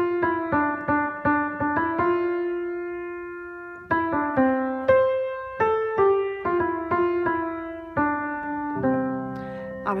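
Gebr. Zimmermann acoustic piano playing a slow single-note melody, each key struck and left to ring: a run of quick notes, one held for about two seconds, then more notes stepping up and down. Lower notes join in near the end.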